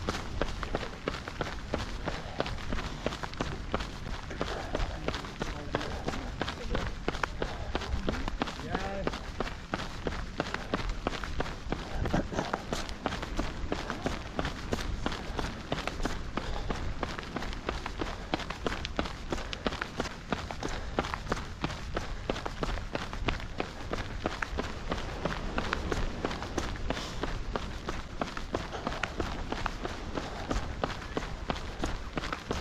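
A runner's footsteps on an asphalt promenade: a steady, quick, even rhythm of footfalls.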